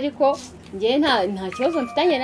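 A woman talking, with a short steady high tone sounding over her voice near the end.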